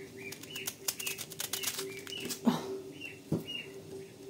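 A small kitchen knife cutting into a crisp head of cabbage: a rapid crackle of snapping leaf cuts in the first couple of seconds, then a single knock. A bird chirps repeatedly in the background.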